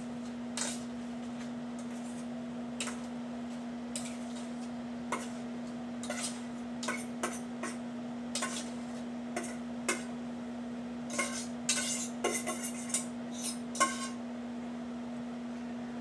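A utensil scraping and clinking against a stainless steel saucepan as stuffing mixture is scraped out into a frying pan. The scrapes and clinks are scattered and come more thickly a few seconds before the end, over a steady low hum.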